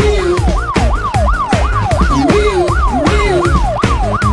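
Cartoon police-car siren sound effect, a fast whooping wail rising and falling about three times a second, laid over an upbeat children's song's instrumental backing with a steady beat.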